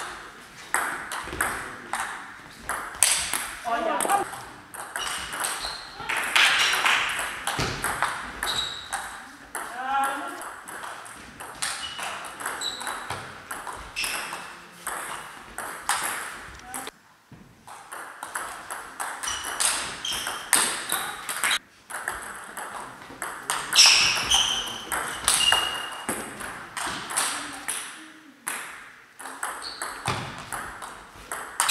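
Table tennis ball clicking back and forth between bats and table in quick rallies, with short pauses between points. Voices call out twice, around 4 and 10 seconds in.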